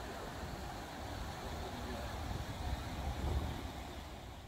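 Water pouring over a small stepped weir, a steady rushing, with wind rumbling on the microphone and swelling about three seconds in.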